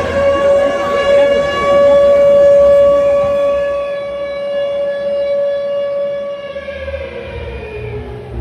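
A loud siren-like tone, held steady for about six seconds and then sliding down in pitch, as part of a pop song's intro played over a PA. The bass beat drops back in near the end.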